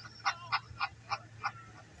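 A person laughing in a run of short, evenly spaced bursts, about three a second, from a drama playing on the coach's TV, over the bus's low steady drone.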